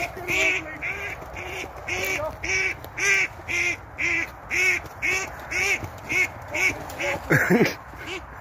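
A bird, apparently the hawk's quarry pinned in the grass, calls over and over in short calls, about two a second, with a louder, wavering cry near the end.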